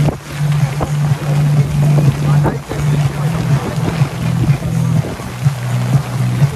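Heavy storm rain and wind on a sailing boat's deck, a rough steady noise with scattered short hits. A steady low hum runs underneath and drops out briefly several times.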